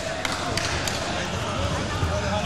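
Indistinct voices echoing in a large hall over a steady low rumble, with a few sharp knocks early on.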